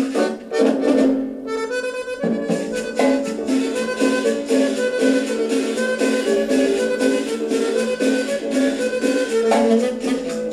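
Instrumental Latin dance music from a 1960s LP playing on a record turntable, with a steady rhythmic ensemble. About a second in, the band thins briefly and a single held note sounds out before the full ensemble resumes.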